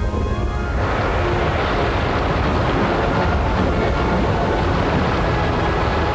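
Soundtrack music over a loud, steady rumbling rush of noise that starts at once and fills out within the first second: a cartoon sound effect of the island forcing its way at full speed.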